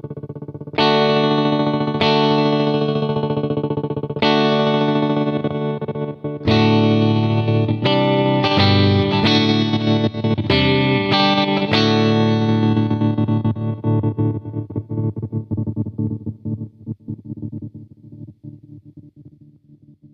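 Electric guitar chords played through a Dreadbox Treminator analog tremolo pedal: a series of struck chords, the last left to ring and fade out with its volume chopped into fast tremolo pulses.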